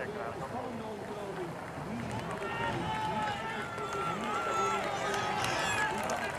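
Roadside spectators cheering and shouting as the race passes, the many voices growing louder and higher from about two seconds in.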